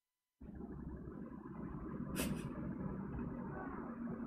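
Low, rumbling background noise on an open call line, cutting in suddenly about half a second in after dead silence, with one brief sharp noise about two seconds in.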